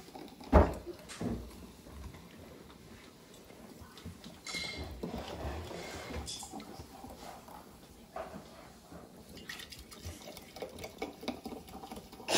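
Apple soda poured from a bottle into glass mason jars, the liquid running in over several seconds. There is a sharp knock about half a second in and a lighter one a second later, with small glassy clinks scattered through.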